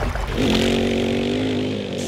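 Outro logo sound effect: a single buzzing, motor-like pitched tone that starts about half a second in, holds for over a second while sagging slightly in pitch, then fades.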